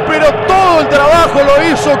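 Male radio football commentator speaking rapidly and excitedly in Spanish in the moments after a goal, with a steady tone running underneath.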